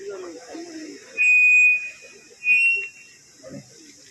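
Two loud, shrill steady tones, the first lasting most of a second and the second shorter and slightly higher about a second later, after a brief murmur of men's voices.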